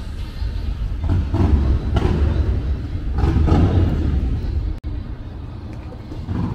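City street ambience: a heavy, uneven low rumble with traffic noise. It drops out briefly about five seconds in and is quieter afterwards.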